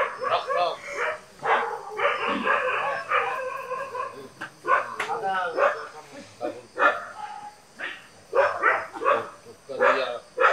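A dog barking in short bursts again and again, mixed with men's voices.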